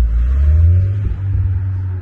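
A loud, low rumble that rises a little in pitch in the first half second or so, then holds steady.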